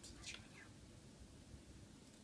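Near silence: faint room tone, with one brief soft hiss just after the start.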